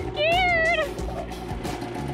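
A woman's high-pitched squealing laugh, a single rising-then-falling cry lasting about half a second, over background music.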